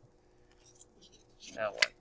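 Faint rustling of paper pages as a ring binder is leafed through. A man says "Now", and a single sharp click sounds near the end.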